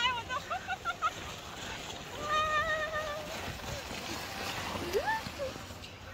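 A plastic sled sliding over packed snow with a scraping hiss, as the riders call out. There is one long held 'ahh' about two seconds in and a rising cry near the end.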